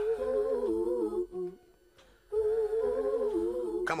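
A voice humming a tune in two phrases, breaking off briefly near the middle.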